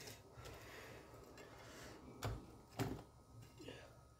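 Two short knocks about half a second apart, over faint room noise, as pieces of fried meat are moved by hand from a wire fry basket into a steel soup pot.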